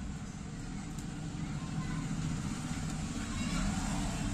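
Steady low background rumble of the kind road traffic makes, with a single faint click about a second in.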